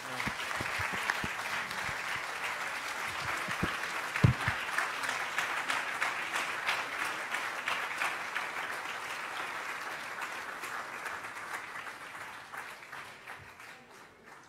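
Audience applauding with steady clapping that gradually dies away toward the end, and a brief low thump about four seconds in.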